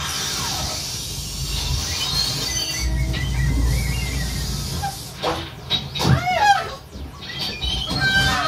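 Live experimental electronic music: a dense noisy wash over a low rumble, then a cluster of wobbling, sliding high tones about six seconds in.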